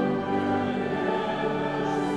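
Church congregation singing a hymn to organ accompaniment, in long held notes.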